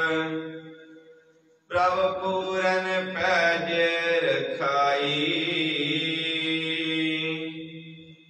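A man chanting a line of Sikh scripture (Gurbani) in a slow, drawn-out melodic recitation. The previous phrase fades out, a brief pause follows, then a new held phrase starts just under two seconds in and trails off near the end.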